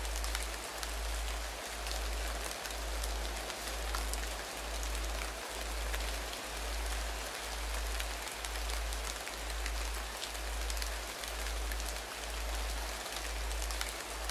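Meditation backing track: steady rain-like hiss over a low hum that pulses about once a second.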